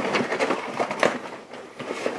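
A hand rummaging inside a fabric backpack: irregular rustling and small knocks as the items inside are moved about.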